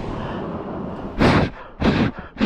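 A man's breathing close to the microphone: a long breathy exhale trailing off, then three short, forceful breaths about half a second apart.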